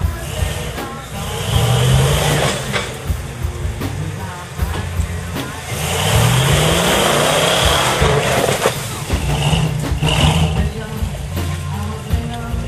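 Full-size Ford Bronco's V8 engine revving under load as the truck climbs out of a mud hole, the revs rising about halfway through, with tyres churning through the mud.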